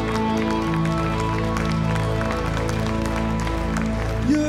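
Live worship band playing an instrumental passage: held keyboard chords with electric guitar, and light percussion ticks keeping a steady beat.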